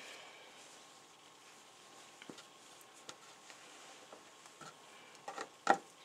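Quiet handling of quilt fabric and batting on a cutting table, with a few faint soft clicks and one sharper knock near the end.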